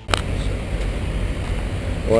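A sharp click right at the start, then a steady low vehicle rumble.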